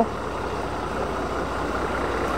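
A motorcycle engine running at low speed, a steady low hum under the rumble of the ride.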